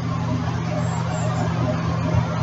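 Steam locomotive standing with a steady hiss of steam and a low hum beneath it.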